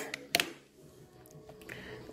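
A single sharp click about a third of a second in, then a few faint ticks as thin coil-building wire is handled by hand, over a quiet room.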